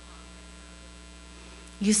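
Steady low electrical mains hum, with a woman's voice starting to speak near the end.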